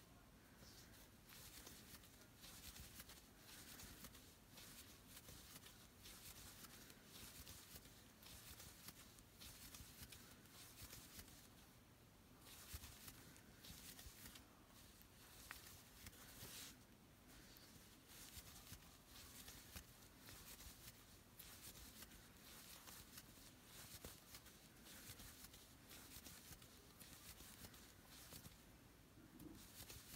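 Near silence with faint, repeated soft rustling of yarn being drawn through stitches with a crochet hook as a round of single crochet is worked.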